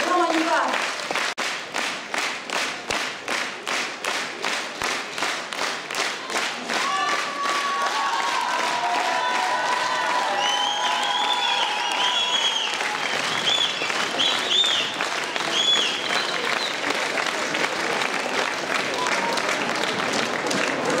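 Concert audience applauding, at first clapping together in a steady rhythm of about two claps a second, then breaking into ordinary unsynchronised applause with high-pitched calls rising over it in the middle.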